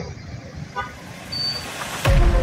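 Street traffic noise from motorcycles and cars running along a busy road.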